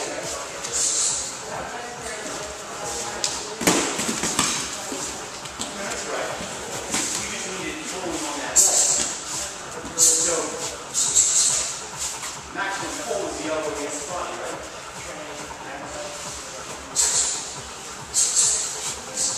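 Indistinct voices in a large gym room, with bodies shuffling on the floor mats during grappling, and a single thump about four seconds in.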